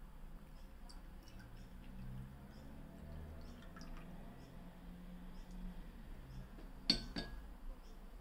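A thin stream of vinegar poured from a small ceramic bowl into a glass of water, a faint trickle. About seven seconds in, one sharp clink with a short ring, the bowl knocking against the glass.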